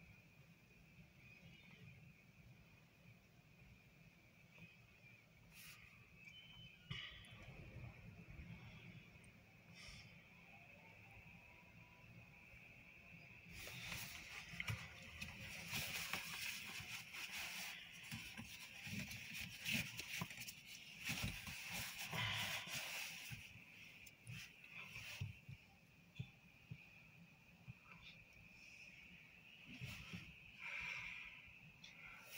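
Wind gusting in a snowstorm, buffeting the microphone with a low rumble. About halfway through, a stronger gust brings a louder rushing noise for roughly ten seconds, then it eases again.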